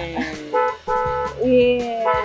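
Novelty car horn sounding a cat-like 'meow', several pitched tones that slide down and then rise and fall in pitch, over background music with a repeating bass line.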